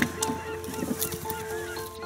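Short bird calls over soft background music with steady held tones.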